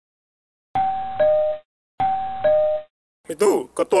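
Two-note ding-dong doorbell chime, a higher note falling to a lower one, rung twice a little over a second apart.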